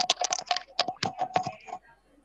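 Computer keyboard typed on quickly: a fast run of key clicks, about seven or eight a second, that stops near the end, over a faint steady hum.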